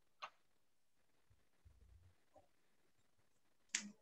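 Near silence: quiet room tone with two brief clicks, a faint one just after the start and a louder one shortly before the end.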